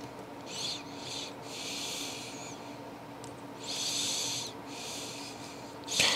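Four short, soft rasping rubs of fingertips twisting and working fine lead wire on a fly hook to break it off by friction, over a faint steady hum.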